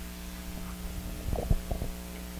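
Handheld microphone handling noise: a few low thumps and rubs a little over a second in, the loudest about halfway, over a steady electrical hum.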